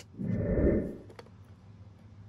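A brief low rushing noise in the first second, then a couple of small sharp clicks as screws and a small cover plate are handled on the shuttle's hard plastic base.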